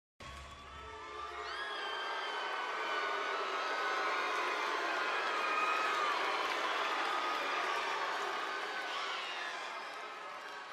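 Large arena crowd cheering and shouting, building over the first few seconds and holding full before easing slightly near the end.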